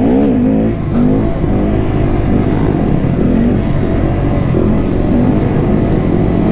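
2017 Honda Grom's single-cylinder 125 cc engine with its stock exhaust, revved hard right at the start and then run with the revs wavering up and down as it is held up on a wheelie.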